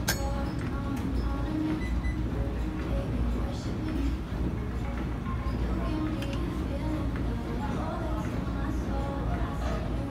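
Gym ambience: a steady low hum under faint background music and distant voices, with a few light metallic clinks.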